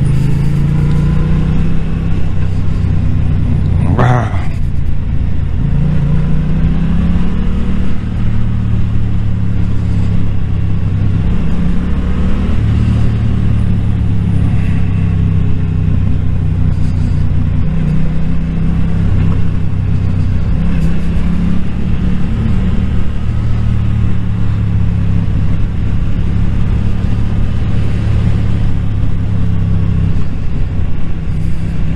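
Yamaha motorcycle engine heard from the rider's seat while riding a winding road, its pitch rising and falling with the throttle over steady wind noise. There is a short sharp noise about four seconds in.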